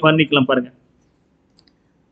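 A man's voice speaking for under a second, then a pause broken only by one faint click.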